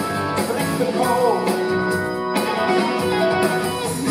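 A live rock band playing: electric guitar over keyboards, bass and drums.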